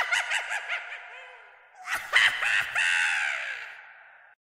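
A sound effect of shrill, rapidly repeating cries in two bursts. The first fades over about two seconds, and the second begins about two seconds in and dies away near the end.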